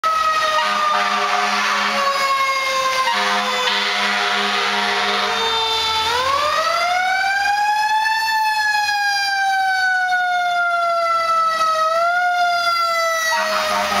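A fire rescue truck's siren wailing as the truck approaches and passes: the pitch falls slowly for several seconds, climbs for about two seconds, then falls slowly again. Long blasts of its air horn sound over the siren in the first half and again near the end.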